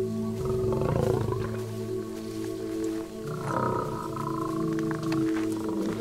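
Lion growling, one growl about half a second in and another around three seconds in, over steady background music.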